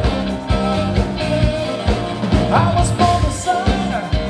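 Live soul-rock band playing with a steady drum beat and bass, and a voice singing. A melodic line slides up and holds notes from about halfway through.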